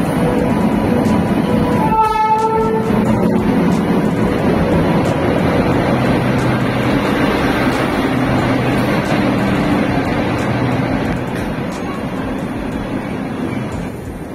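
Electric-locomotive-hauled passenger train rolling into the platform alongside, a steady loud rumble of wheels and coaches, with a short train horn blast about two seconds in. The rumble eases gradually toward the end as the train slows.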